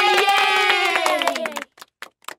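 A drawn-out cheering voice over quick clapping, sinking slightly in pitch before it cuts off suddenly about three-quarters of the way through.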